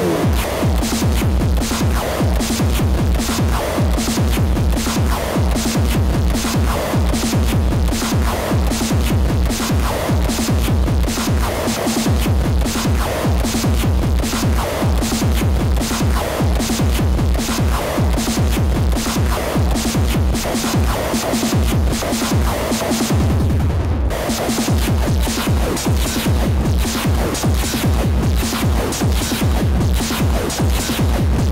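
Hardcore electronic dance track with a fast, steady kick drum and dense synth layers. The kick drops out for about a second roughly three-quarters of the way through, then comes back.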